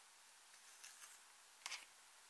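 Near silence broken by a few faint handling noises: soft crackling scrapes about a second in, then a brief cluster of clicks near the end, from makeup being handled and crumbled over glass dishes.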